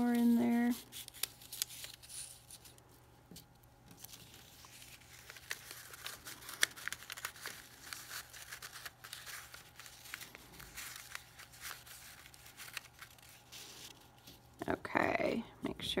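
Quiet, irregular rustling and crinkling of construction paper as woven paper strips are slid along their slits and pushed together, with short scattered clicks of paper edges.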